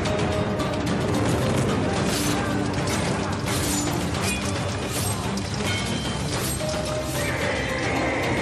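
Dramatic trailer music over battle sound effects, with several sharp metallic hits like swords clashing.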